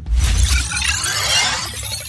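Outro logo-sting sound effect: a sudden low boom with a dense, high sparkling swirl over it that slowly fades.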